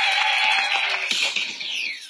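Studio audience applause and laughter over closing music; about a second in, it changes to a sound with falling sweeps that fades away.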